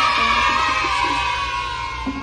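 A crowd-cheering sound effect, many children's voices shouting together in one long cheer that begins suddenly and fades out near the end, added as a celebration effect.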